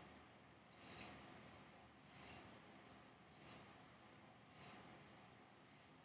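Near silence with a faint, short, high-pitched chirp repeating regularly about every second and a quarter.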